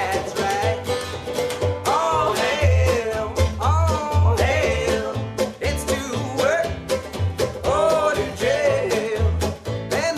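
Live acoustic string band playing an upbeat folk/bluegrass-style song: archtop acoustic guitar strummed, five-string banjo picked and upright bass thumping out the low notes, with men singing.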